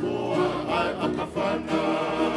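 A choir singing a Tongan song in harmony, several voices holding and moving between notes together.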